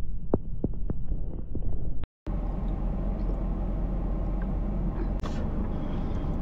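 Steady low hum and rumble inside a car cabin, with a few faint clicks. The sound drops out for a moment about two seconds in and returns fuller, with a sharper click about five seconds in.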